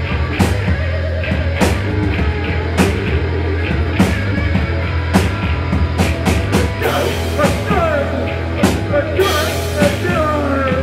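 Rock band playing live: a drum kit with regular hits, a steady bass guitar line and electric guitar, with pitch glides in the second half.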